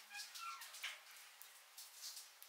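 Faint crackling of burning safety matches, scattered sharp crackles, with a short high-pitched falling whine in the first second.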